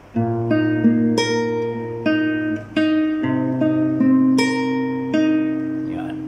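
Capoed nylon-string classical guitar fingerpicked in a slow arpeggio: thumb on a bass note, then single treble notes plucked one after another and left to ring. About three seconds in, the bass changes as the chord moves on to A minor.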